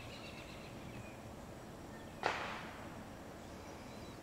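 Quiet outdoor background with a faint high chirping in the first second, then one sudden sharp noise a little over two seconds in that trails off within half a second.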